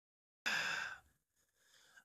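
A man's single sigh, a breathy exhale about half a second long.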